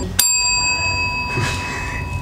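A chrome desk service bell struck once with a hand, giving a bright ring that fades over about a second and a half: a contestant ringing in to answer first.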